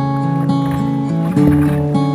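Acoustic guitar strumming chords, changing chord about every half second, with no singing.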